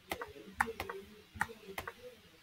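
Computer mouse button clicking about seven times, sharp short clicks, some in quick pairs, as chess pieces are moved on an online board.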